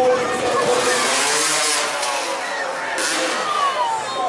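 Motocross bike engine revving, its pitch rising and falling, with a falling note near the end.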